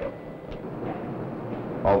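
A lull filled with steady low background noise and a faint hum from an old film soundtrack; a man's narration begins near the end.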